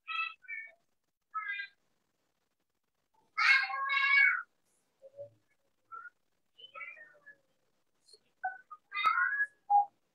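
Several short, high-pitched, voice-like calls, the loudest a drawn-out two-part call about three and a half seconds in, with dead silence between them.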